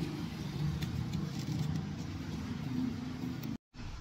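Low, steady outdoor background rumble with a faint hum, and a few light ticks from hands handling the rubber rim tape on the wheel rim; the sound cuts off abruptly shortly before the end.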